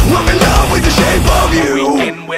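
Heavy metal band music, with distorted electric guitars, bass and drums playing an instrumental passage. About one and a half seconds in, the heavy low end drops out and the music thins to a sparser section.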